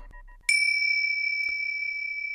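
Electronic soundtrack music: a single high, bell-like synthesized tone that starts suddenly about half a second in and then holds steady.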